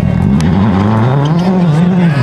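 World Rally Car's turbocharged four-cylinder engine at full throttle as the car passes on a gravel stage, its pitch dipping, then climbing and wavering with the throttle and gear changes.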